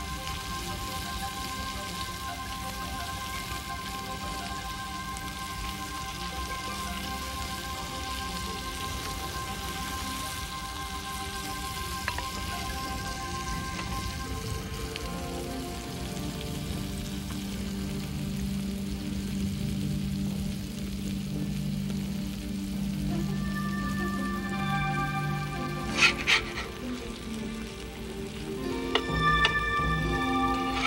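Bass fillets basted in butter sauce sizzling on a grill over a fire, a steady hiss under background music. A couple of sharp clicks come near the end.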